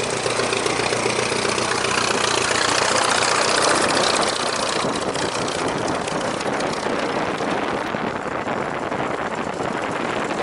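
Stampe SV4B biplane's four-cylinder de Havilland Gipsy Major engine idling steadily on the ground, just after starting, with the rush of the propeller wash. The sound is at its loudest about three to four seconds in and eases off a little after that.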